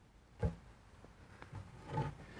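A single short knock about half a second in, then a few faint clicks: a drawer front and its spring clamps being handled and set against the cabinet.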